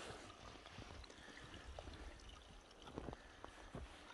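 Faint trickle of a small snowmelt stream running among rocks under the snow, with a few soft clicks near the end.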